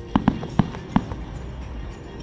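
Aerial fireworks shells bursting: four sharp bangs in quick succession within the first second.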